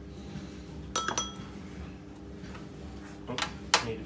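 Metal spoons clinking against a sauce bowl and a metal baking tray while tomato sauce is spread onto pitta breads. There is a short ringing clink about a second in, then several more clinks near the end, the loudest just before it ends.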